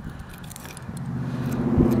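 Low, steady engine hum of a motor vehicle, growing louder from about a second in.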